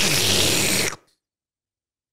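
A man making a loud, breathy sucking noise with his mouth close to the microphone, a comic sound effect for a soul being sucked out. It lasts about a second and stops abruptly.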